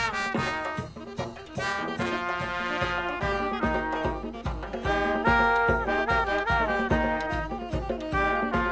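Cimarrona band music: brass instruments playing a lively melody over a steady, regular drum beat.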